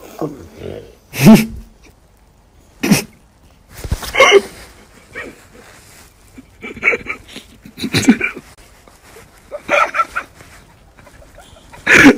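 A dog making short vocal sounds, a series of separate bursts every second or two, the loudest about a second in.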